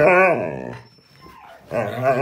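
Siberian husky giving a long, wavering grumble-howl, its pitch rising and falling, then starting another one near the end: the husky 'talking back' in protest at being ordered to get up off the bed.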